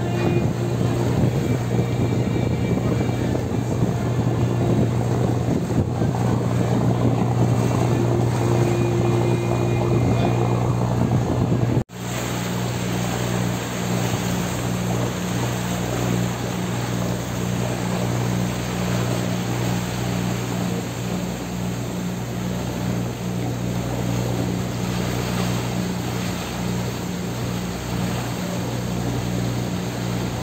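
A tour boat's engine running at a steady cruise, a low drone with wind and water noise over it. It drops out for an instant about twelve seconds in, then carries on.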